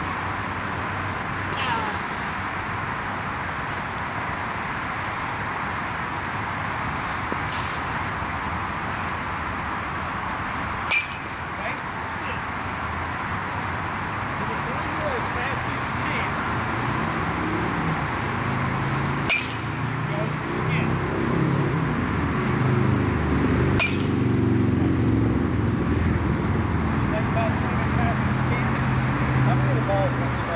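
A baseball bat striking pitched balls in a batting cage: about five sharp cracks spaced several seconds apart, each with a short ring. Under them runs steady background noise, with low muffled talk in the second half.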